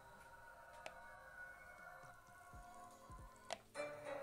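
Faint, mystical-sounding ambient tones from the small speaker of a homemade Arduino game (DFPlayer module) in standby mode, waiting for all players to touch their pads. Several steady held tones, with a faint click about a second in and another near the end.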